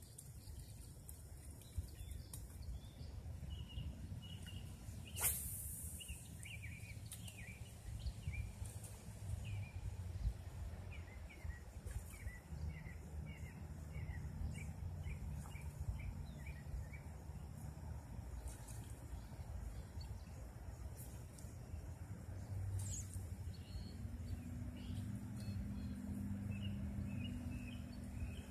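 Outdoor ambience with small birds chirping in quick runs of short chirps over a low steady rumble. One sharp click comes about five seconds in.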